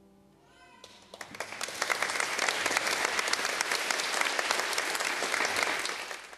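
Church congregation applauding after a cello solo. The clapping starts about a second in, swells, then holds steady, while the last cello note dies away at the very start.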